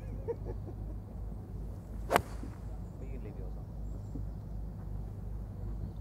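A golf club strikes a ball on a full swing: one sharp crack about two seconds in, the loudest thing heard.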